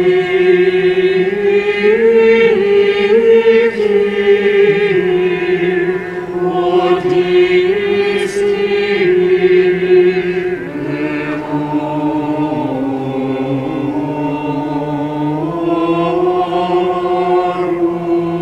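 Mixed choir of men's and women's voices singing a slow chant-like hymn, holding sustained chords that move in steps, a little softer after about ten seconds, in a large stone church.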